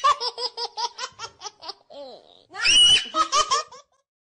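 An older man laughing hard: a rapid run of short, high-pitched 'ha-ha' bursts, a shrill squealing laugh about two and a half seconds in, then a few more bursts.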